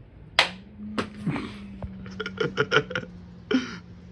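A soft-tip dart hitting an electronic dartboard with a single sharp smack about half a second in, then a lighter click. After that come a run of quick short pulses and a steady low hum.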